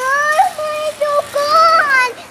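A young girl singing a short tune in a high voice: several held notes in a row with brief breaks between them.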